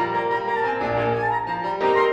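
Clarinet and piano playing together: the clarinet carries a slurred melodic phrase that dips and rises in pitch, over sustained piano chords.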